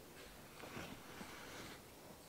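Faint sound of a marker drawing on a folded paper strip, with light handling of the paper.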